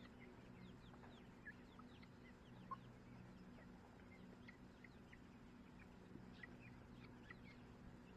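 Young chickens in a coop peeping and chirping softly, many short chirps scattered throughout, with one slightly louder call about three seconds in, over a steady low hum.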